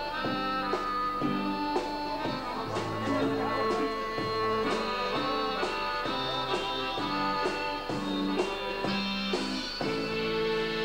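Live band music: an accordion playing a quick melody and chords, with a drum kit keeping time and cymbal strokes about twice a second.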